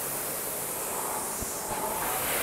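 Concept2 indoor rower's air flywheel whirring, a steady rush of air as it spins through an easy stroke at about 23 strokes a minute, drag factor set at 142.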